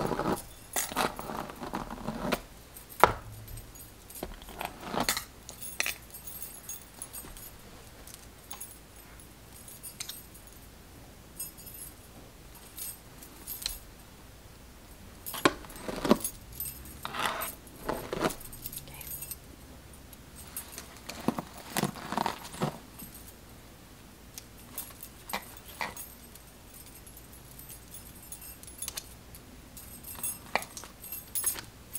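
Stacked metal bangles and beaded bracelets on a wrist clinking and jangling in irregular bursts, with quieter spells between, as the hand moves through a styling doll head's synthetic hair. There is one sharp click about three seconds in.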